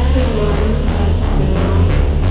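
Electronic techno music: a heavy, continuous bass with a synth tone that slides up and down in pitch, in a dense section with the beat less prominent.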